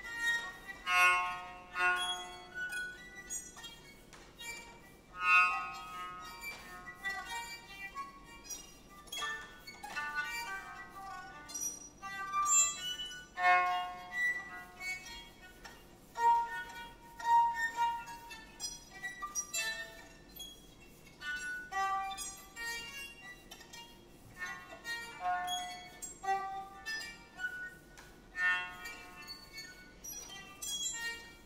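Solo violin playing a contemporary piece in short, broken gestures: brief high notes and sharp bow attacks, separated by quiet gaps, with sudden loud accents.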